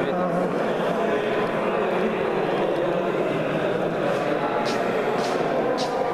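Indistinct chatter of several people talking at once in a large hall, with a few short clicks near the end.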